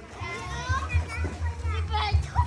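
Children's voices calling and shouting as they play in a swimming pool, with music playing underneath.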